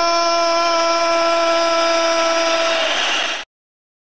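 A man's drawn-out announcer shout, the long held end of 'Let's get ready to rumble!', one steady note that cuts off about three and a half seconds in.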